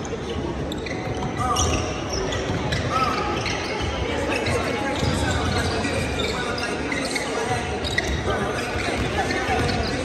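Basketballs bouncing on a hardwood gym floor as players dribble during warm-ups, many uneven overlapping bounces echoing in a large gym, with voices underneath.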